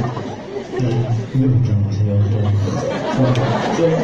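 Speech only: a voice talking, with no other sound standing out.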